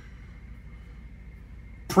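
Room tone in a pause between words: a faint steady low hum with a thin high tone. A man's speech starts again just before the end.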